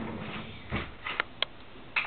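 A few faint handling noises on a small handheld camera: a soft bump, then two short sharp clicks in quick succession, over faint hiss.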